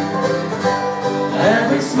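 Live folk band playing acoustic guitars, mandolin and electric guitar between sung lines, with a steady strummed accompaniment; a voice comes back in near the end.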